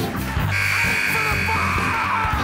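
Game-clock buzzer marking the end of time: one steady high tone that starts about half a second in and holds for nearly two seconds, over band music.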